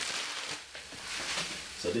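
Shredded stir-fry vegetables sizzling in a stainless steel pan greased with spray oil, an even hiss just after they are tipped in.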